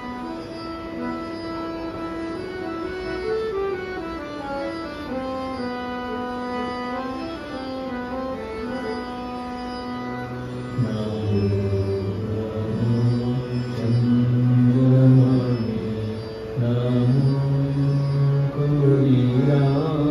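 Harmonium playing a stepping devotional melody on its own for about ten seconds, then men's voices join, singing a bhajan over it, and the sound gets louder.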